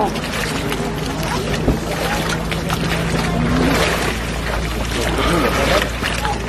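Water splashing and sloshing as a man dunks under and rises in an icy plunge hole, with voices in the background.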